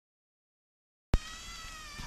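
A click, then a steady whine with many overtones that sags slightly in pitch: the model layout's Magnorail drive motor and gears running, a noise that wrapping the motor in cloth and foam has not cured.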